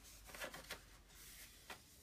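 Near silence, with a few faint rustles and taps of cardstock sheets being handled, about half a second in and again near the end.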